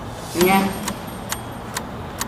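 Crisp deep-fried banana leaf crunching as it is chewed, a sharp crunch about every half second, after a short voiced sound near the start.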